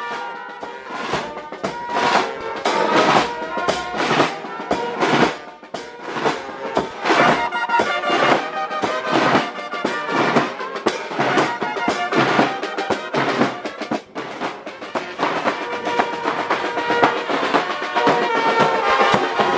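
Brass band music with a steady drum beat, about two strikes a second, over held horn notes.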